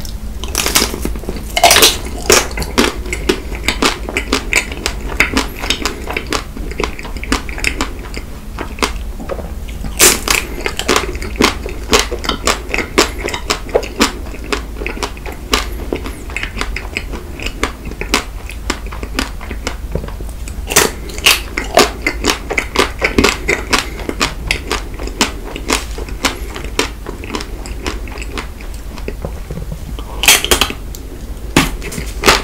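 Close-miked biting and chewing of a white-chocolate-coated Magnum ice cream bar: the thin chocolate shell cracks and crunches in many sharp clicks, one after another, with chewing in between.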